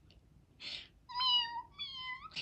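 A young woman imitating a cat with two high-pitched meows, one about a second in and a shorter one near the end.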